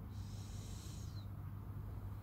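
A bird's high, thin screech lasting about a second, falling in pitch as it ends, over a steady low rumble of wind or distant traffic.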